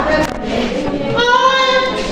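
Singing: a high voice that settles into a held, steady note in the second half.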